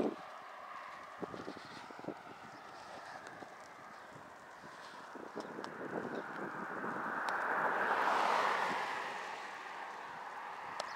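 Wind rushing over the microphone of a moving bike, with a car passing close by: a rising and falling rush about seven to nine seconds in.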